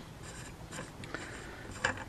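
Birdcage flash hider being unscrewed by hand off a rifle barrel's threaded muzzle: faint metal-on-metal rubbing with a few light clicks, the loudest near the end as it comes free.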